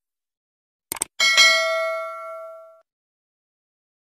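Subscribe-button animation sound effect: two quick clicks about a second in, then a bright bell ding that rings and fades over about a second and a half.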